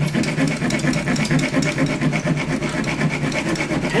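Bare hacksaw blade, held in the hand without its frame, sawing back and forth on the hidden nail that fastens a plastic nail-on outlet box, in quick steady strokes of metal grating on metal.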